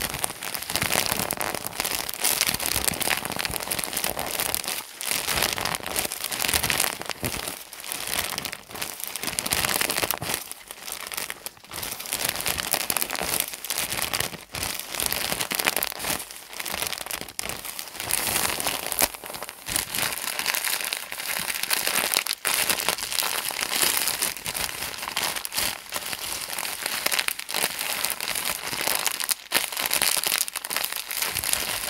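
Thin plastic packaging squeezed and crinkled by hands, a dense, continuous crackle with brief pauses.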